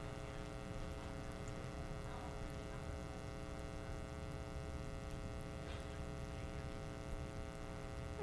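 Steady electrical mains hum with a buzzy stack of overtones, at a low, even level.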